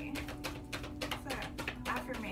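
A deck of oracle cards being shuffled by hand, cards tapping and slapping together in quick, irregular clicks several times a second, over a low steady hum.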